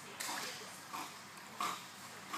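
Dog swimming with its head above the water, breathing in short puffs about three times in two seconds.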